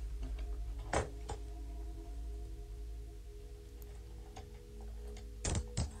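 Low steady hum with a few faint held tones over it, broken by a sharp click about a second in and two more clicks near the end.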